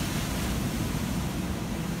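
Surf breaking on a sandy beach: a steady, even wash of wave noise, with wind rumbling on the microphone.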